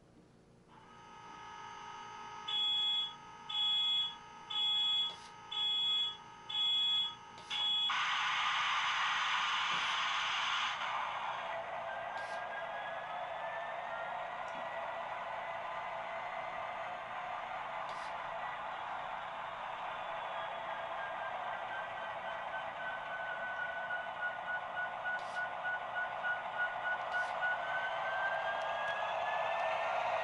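The DCC sound decoder of a Walthers Mainline HO-scale Union Pacific 4141 diesel locomotive, playing through the model's small speaker. Five short beeping tones about once a second come first, then a loud burst of noise about eight seconds in. After that comes a steady diesel engine sound whose pitch slowly rises as the model pulls away.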